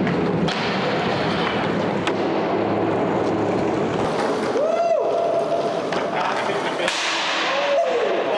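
Skateboard wheels rolling on a concrete car-park deck, echoing in the large covered space, with a few sharp clacks of the board.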